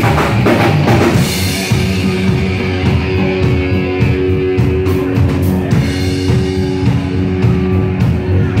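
Live rock band playing an instrumental passage without vocals: drum kit, distorted electric guitar and electric bass, with held guitar notes ringing from about halfway in.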